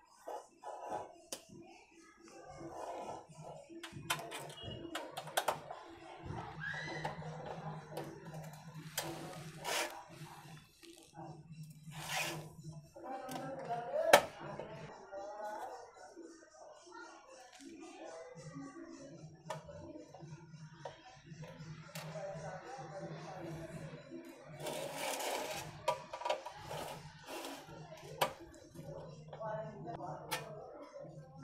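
Small screwdriver backing out the screws of a computer power supply's sheet-metal cover: scattered light clicks and scrapes, with the sharpest click about fourteen seconds in. Faint voices and a low hum run underneath.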